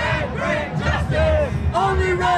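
A crowd of street protesters shouting a chant together, loud, with long drawn-out shouted syllables repeating.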